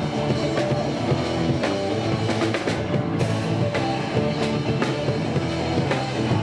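Street band playing rock music: amplified electric guitars over a drum kit.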